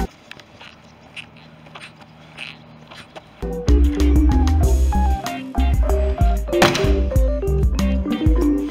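A few faint squeaks from shoes while walking on a sidewalk, for about three seconds; then background hip-hop music with a heavy beat comes in and carries on.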